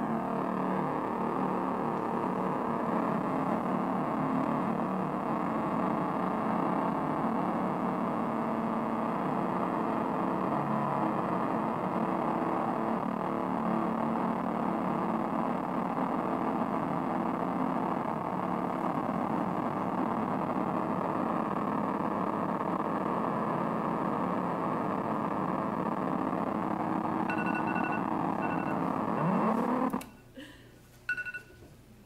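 Handmade touch-controlled synthesizer built from hex Schmitt-trigger logic circuits, its square-wave oscillators set by touch keys, photocells and knobs, playing a dense, steady drone of several tones. Near the end a few high tones switch on and off and a low tone glides upward before the sound cuts off suddenly.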